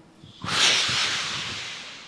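A large audience making a hissing swoosh together with their mouths, imitating the sound of an email being sent. It starts abruptly about half a second in and fades away over about a second and a half.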